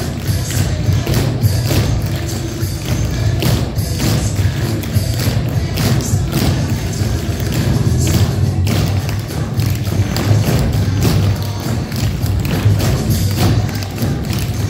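Tap shoes of a group of dancers striking a wooden floor in many quick, overlapping taps and stamps, over music with a steady beat.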